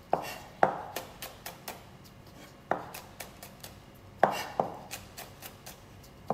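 Kitchen knife chopping green chillies on a plastic cutting board: a series of sharp knocks of the blade on the board, a few loud strikes among quicker light taps.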